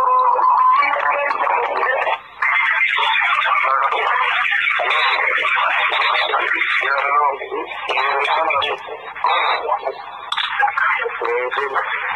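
Playback of a recorded telephone call: men's voices sounding narrow and tinny over the phone line, muffled and hard to make out, with a short steady tone in the first second. The audio is poor because the call was not recorded directly on a phone.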